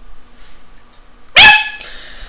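A small dog giving a single short, high-pitched bark about one and a half seconds in.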